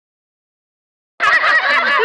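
Dead silence for just over a second, then a dense chorus of many overlapping high, bending calls starts abruptly.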